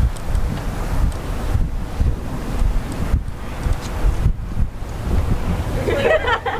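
Wind buffeting the microphone: a loud, gusty low rumble that swells and dips.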